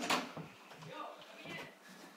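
An interior door's lock and handle being worked: a sharp click right at the start, then faint scattered knocks and rattles.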